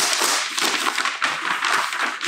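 Brown paper mailing envelope being torn open and rustled as a magazine is pulled out of it: a continuous run of tearing, crinkling paper with many small crackles.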